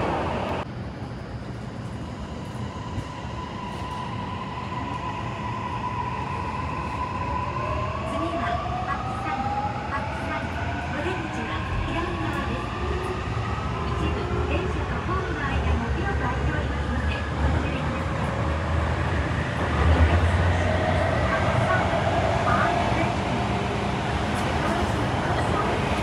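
Toei Mita Line 6500-series train's traction motors heard from inside the car as it pulls away from a station. A steady whine gives way to several tones rising in pitch together as the train accelerates, over a growing rumble from the running gear.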